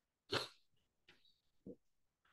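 A person's single short, sharp vocal sound about a third of a second in, then a faint brief low sound near the end, in an otherwise quiet room.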